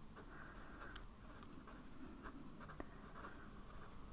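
Faint scratching of a fine-tip pen writing on lined notepaper, with a couple of tiny ticks from the pen tip.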